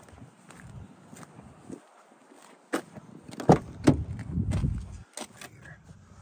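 Footsteps on asphalt, then sharp clicks and knocks of a car door's handle and latch as the door is opened. Bumps and rustling follow as someone leans into the rear seat of the car.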